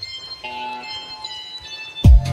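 Instrumental break in a forró song: sustained, bell-like keyboard chords with the drums and bass dropped out, the chord changing about half a second in.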